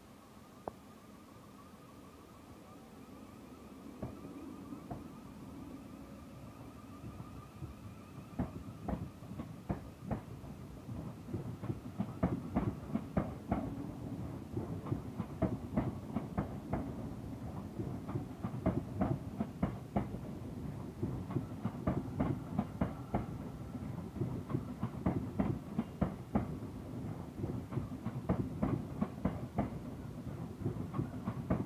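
Thameslink Class 700 electric multiple unit moving slowly past the platform end. Its wheels click and clatter over the rail joints and points, growing louder and more frequent as the train comes by. A faint wavering whine is heard during the first ten seconds.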